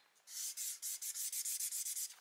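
Felt-tip marker scribbling back and forth on paper, coloring in a box: a rapid, even run of scratchy strokes that starts about a quarter second in.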